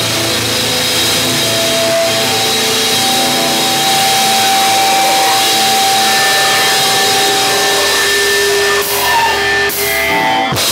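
Hardcore band playing loud, heavily distorted music: guitars hold long sustained notes over a dense wall of sound, with drums and cymbals less prominent than in the surrounding passage. The sound dips briefly twice near the end.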